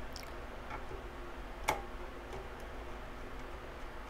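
A few light clicks and taps of small parts being handled and fitted on a NAS enclosure, with one sharper click about 1.7 seconds in.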